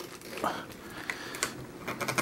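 Light plastic clicks and handling noise as a plastic gooseneck magnifier lens is folded down into place, a few short taps scattered over the two seconds.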